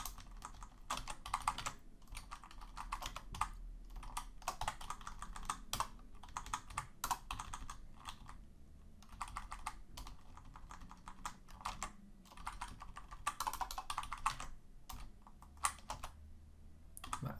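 Computer keyboard typing in irregular bursts of keystrokes with short pauses between them.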